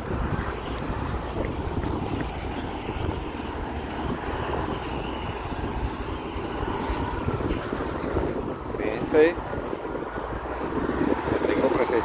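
Steady road-traffic noise, with a low wind rumble on the microphone.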